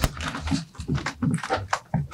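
Footsteps of several people walking across a stage floor: irregular knocks and thuds, with a sharp knock right at the start.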